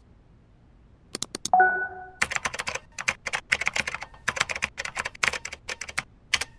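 Typing on keys: a few key clicks about a second in, a short bell-like chime, then a fast, uneven run of key strikes.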